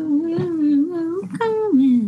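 A person singing long, drawn-out notes with a slight waver. About a second and a half in, the voice steps up to a higher note and then slides back down near the end.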